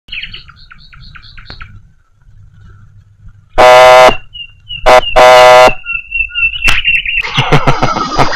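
A run of quick high chirps, about four a second, lasting a second and a half. Then two loud blaring horn blasts, a short one and then a longer one, with a thin wavering high tone between and after them.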